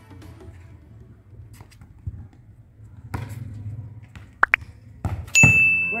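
A football knocked a few times with the foot and heel on a concrete court, over background music. Near the end a bright bell ding rings and holds: the chime of an on-screen subscribe-button animation.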